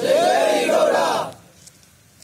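A group of men shouting a slogan together with raised fists: one loud cry of many voices lasting just over a second, then it breaks off.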